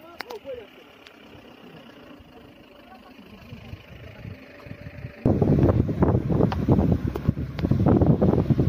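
Wind buffeting the phone's microphone. It starts abruptly about five seconds in, then stays loud and gusty, a low rumbling flutter. Before that there is only a faint outdoor background.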